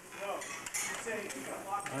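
Cutlery clinking against plates as several people eat at a table: a few short, sharp clinks scattered through the moment, under low background chatter.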